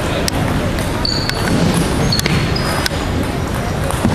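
Table tennis balls clicking, a handful of sharp, irregular clicks from bounces on tables and bats, with a few short high squeaks, over a steady babble of voices echoing in a large sports hall.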